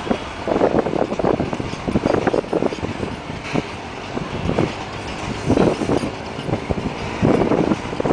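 A rake of BCNA covered goods wagons rolling past close by, the wheels clattering over the rail joints in clusters of knocks about once a second over a steady rumble.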